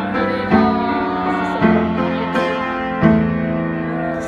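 Upright piano playing sustained chords, each struck afresh about every second and a half, with a voice singing over them.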